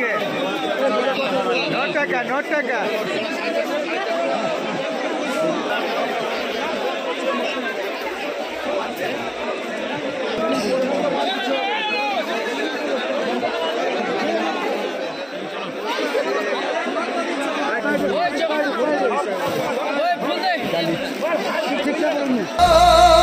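Many people talking at once: the steady chatter of a crowded flower market's buyers and sellers, with no single voice standing out.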